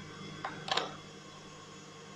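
A stand mixer runs with a steady whir as it beats eggs and sugar. Two short clicks come about half a second in.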